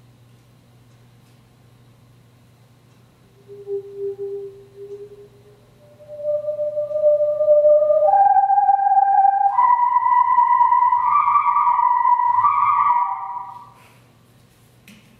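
A whirled toy pipe (a whirly tube) whistling, starting a few seconds in, its pitch jumping up in distinct steps rather than gliding as it is spun faster, to a loud high note that flickers between two pitches before dying away near the end. The steps are the tube's resonances, its overtones or harmonics: only certain notes sound, none in between.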